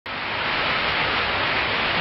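Small man-made waterfall spilling over a stacked-rock wall, a steady rush of splashing water.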